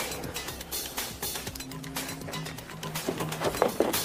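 Background music score with held low notes under a steady beat.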